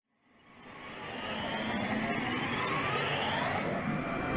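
Logo-intro whoosh sound effect: a rushing riser that fades in from silence and swells over about two seconds, sweeping upward in pitch, its hiss cutting off sharply near the end.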